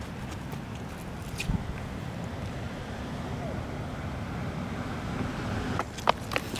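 Steady low outdoor rumble with no clear source, with a single faint click about a second and a half in.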